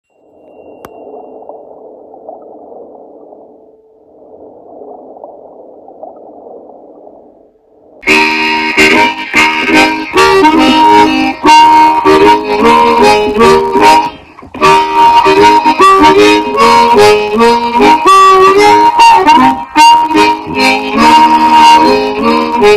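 Two soft swells of hissing noise, then about eight seconds in a blues harmonica starts, loud: an A-flat diatonic harp played cross harp (second position) in E-flat, moving between held single notes and chords, with a brief break near the middle.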